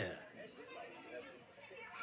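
Faint voices of several people chattering in the background.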